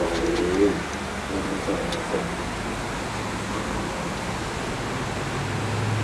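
A dove cooing a few low notes over a steady low hum.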